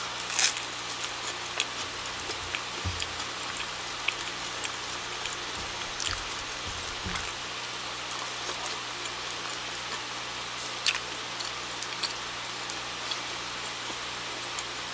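A person biting and chewing curry bread close to the microphone: scattered small crackles and mouth clicks over a steady background hiss and low hum.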